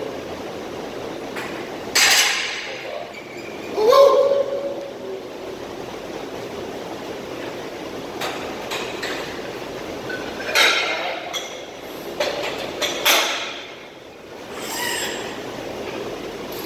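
Steel barbell and iron weight plates knocking against a squat rack: a few separate sharp metal clanks spread out over the time, one with a short ring after it.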